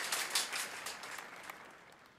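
Audience applause of many hands clapping, fading away.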